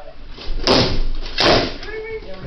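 Two loud, heavy impacts a little under a second apart, each with a short ringing tail.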